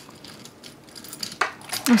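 Faint clinking of dice and small charms being moved about in a charm bowl.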